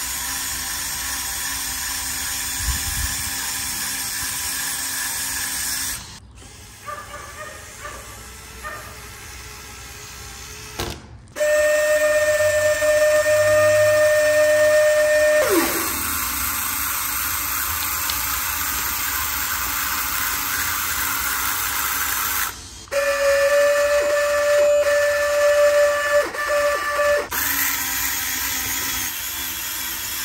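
Small electric motors on a homemade model straddle carrier running with a steady whine, in two stretches of about four seconds each. The sound is cut abruptly several times, with a steady whirring noise between the whines.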